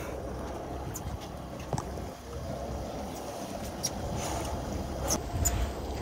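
Twin Honda four-stroke outboards running steadily at trolling speed, a low rumble mixed with water and wind noise, with a few sharp clicks.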